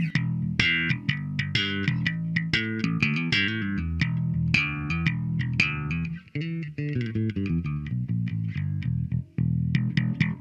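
Ibanez Soundgear SR300M electric bass played fingerstyle: a quick run of plucked notes, with two short breaks about six and nine seconds in. It is strung with worn nickel roundwound strings that the player calls pretty darn dead; to him the D and G feel to have a little more snap, while the E and A sound just dead.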